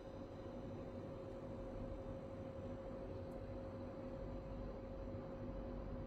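Steady room tone: an even low hum with a faint constant whine and no distinct events.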